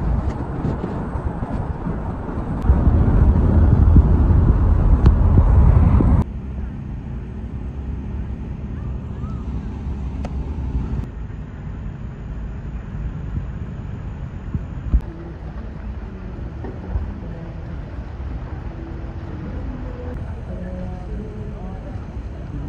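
Outdoor ambience in several cut-together shots: a loud, low rumbling noise for about six seconds that stops abruptly, then a much quieter background with faint voices toward the end.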